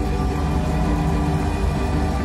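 Live jam-band concert music: sustained chords held over a heavy, steady bass.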